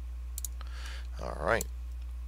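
Two quick computer mouse clicks, then a short wordless vocal sound rising in pitch, which is the loudest thing, over a steady low hum.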